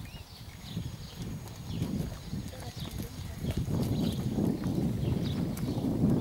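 Hoofbeats of a ridden horse on a sand arena, muffled footfalls that grow louder in the second half as the horse comes closer.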